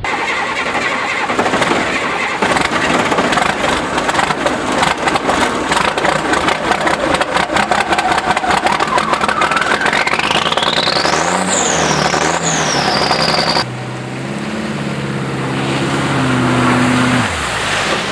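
A heavy diesel truck engine running hard and revving, with a whine that rises steeply in pitch over a few seconds. About three-quarters of the way in it cuts suddenly to a quieter, steadier low engine-like drone.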